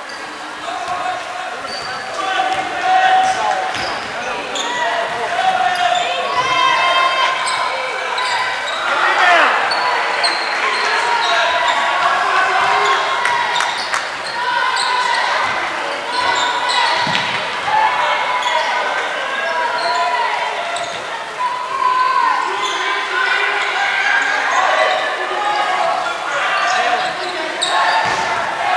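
Basketball bounced on a hardwood gym floor during play, with overlapping voices of players and spectators in the large gymnasium.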